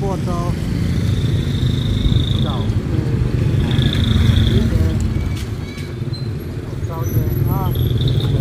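Street traffic: a steady low rumble of passing motorcycles and cars, with short bits of voices and two held high tones about one and four seconds in.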